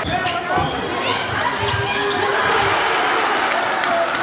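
A basketball bouncing on a hardwood gym floor during play, with voices from the players and crowd in an echoing gym.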